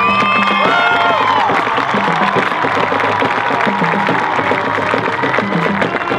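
Marching band playing, with held brass notes sliding in pitch during the first second or so, then a full, dense passage over a steady beat of drums and low notes.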